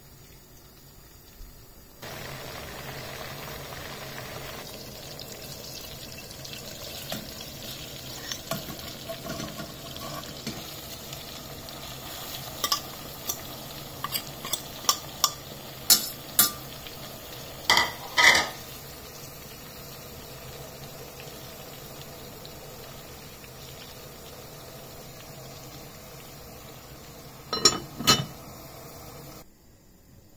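Food frying in a pan, a steady sizzle that starts about two seconds in, with a utensil knocking and scraping against the pan: a run of sharp clacks in the middle and two loud ones near the end.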